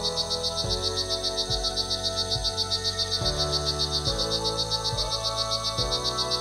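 A rainforest animal chorus: a high-pitched, fast, evenly pulsing trill runs throughout. Beneath it is background music of sustained low chords that change about once a second.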